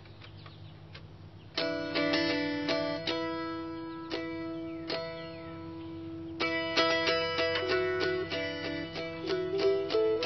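Mountain dulcimer strummed, playing a tune over ringing drone strings, with a false nut slid under the bass and middle strings raising their low D's to E's. The playing begins about a second and a half in and gets busier and louder about halfway through.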